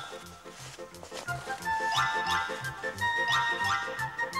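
Background music with a steady, evenly repeating bass beat under a melody of bright held notes and short sliding notes, growing louder about a second in.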